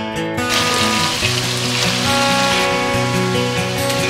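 Chicken pieces sizzling in hot oil in a kadhai, a dense hiss that comes in about half a second in, over acoustic guitar background music.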